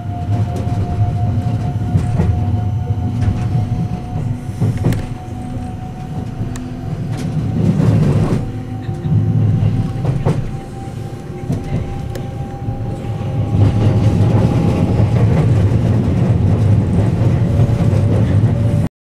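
Haruka limited express electric train running, heard from inside the carriage: a steady low rumble of wheels on rail with a few brief clacks, and a steady whine that rises slightly in pitch before fading.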